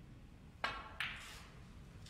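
A snooker shot: a sharp click of the cue tip striking the cue ball, then about half a second later a louder click as the cue ball hits an object ball.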